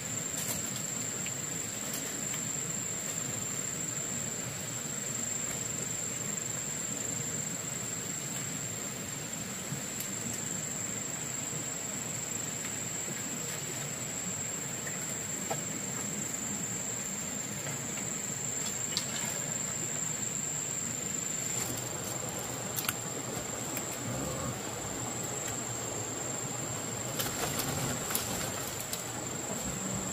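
Insects chirring outdoors, one steady high-pitched tone over an even background hiss, with a few faint clicks.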